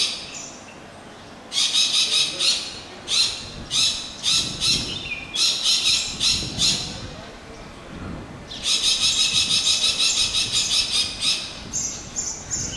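Harsh, rasping bird calls given in short repeated bursts, with a pause and then a longer unbroken run of chattering squawks near the end.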